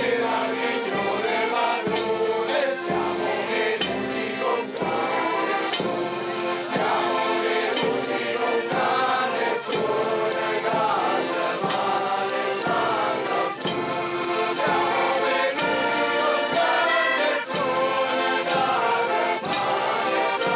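A band of Sant'Antonio Abate carollers singing the traditional house-to-house well-wishing song together. Diatonic button accordions (organetti) accompany them, with a bass drum keeping a steady beat under bright cymbal strokes.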